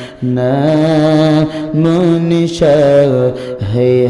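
A man singing an Islamic devotional chant unaccompanied into a microphone, in long, slightly wavering held notes. The notes come in several phrases, with brief breaths between them.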